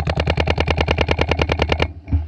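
Luxe 2.0 electropneumatic paintball marker firing a rapid string of shots, about thirteen a second, stopping shortly before the end.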